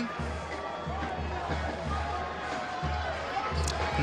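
Stadium crowd noise with faint music playing under it, and an uneven low rumble.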